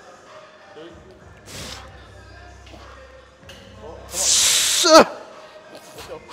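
A man's hard, forceful exhale during a heavy rep: a hissing breath of about a second, about four seconds in, that ends in a short falling grunt. A fainter breath comes earlier.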